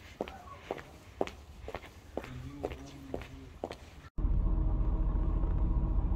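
Footsteps on street paving, about two a second. About four seconds in they cut off abruptly and give way to the louder steady low rumble of a car driving, heard inside the cabin.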